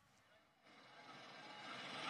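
Near silence, then faint road traffic noise fading in less than a second in and growing slowly louder.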